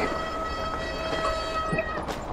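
Mountain bike rolling down a loose rocky slope: a steady high-pitched buzz with overtones comes from the bike over the rumble of tyres on rock, and cuts off shortly before the end.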